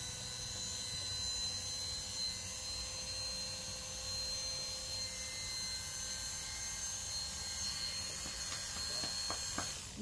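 Corded electric animal clippers running with a steady hum as they shave fur from a dog's hind leg, switching off just before the end.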